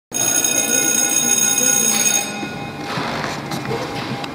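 A bell ringing with a steady, bright, many-toned ring for about two seconds, then cutting off, its lower tones dying away over the next half second. The ring is typical of an electric school bell.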